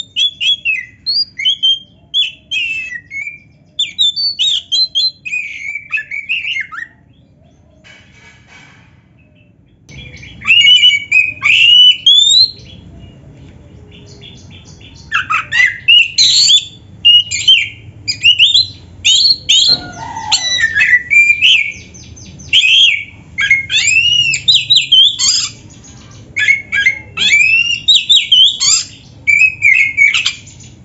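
Oriental magpie-robin (kacer) singing loud, fast phrases of whistled notes that swoop up and down, its song packed with borrowed phrases of other birds (isian). The song breaks off for a few seconds about seven seconds in, then resumes near the ten-second mark, denser, and runs on.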